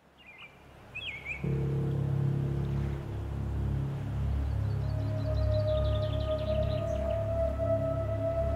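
Ambient background score: a low, sustained chord swells in about a second and a half in over a slowly pulsing bass, and a higher held note joins around the middle. A few short bird chirps sound near the start.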